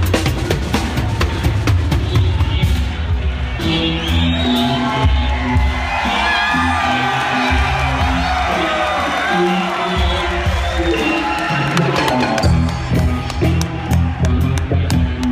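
Live rock band playing loud, recorded close up on stage: drum kit and deep sustained bass notes. The drums thin out for most of the middle, with voices over the bass, and come back in near the end.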